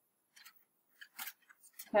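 A few short, faint scratches of a stylus writing a numeral.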